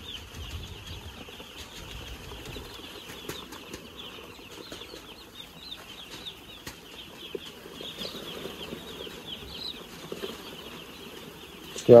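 A large flock of two-day-old broiler chicks peeping all at once: a dense, continuous chorus of short, high chirps.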